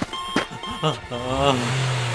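Short high electronic alert beeps that stop about a second in, then a car engine sound effect starts up and runs steadily as the toy car drives off.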